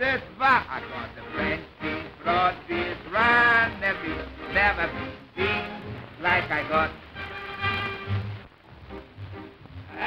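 A man singing a comic patter song with dance-band accompaniment, in phrases with some longer held notes, on a thin old film soundtrack.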